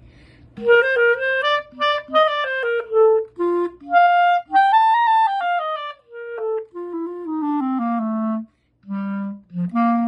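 Solo clarinet playing a short tune of separate notes that climbs to a high note about halfway through, then steps back down to low notes and ends with a few short ones.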